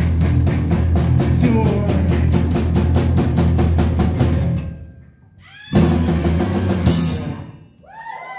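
Live band playing a song, with drums driving a steady fast beat of about five hits a second. About five seconds in the band drops out briefly, then comes back with one loud final hit that rings out and fades: the end of the song.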